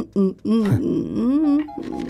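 A person's wordless vocal sounds, pitch sliding up and down, over background music.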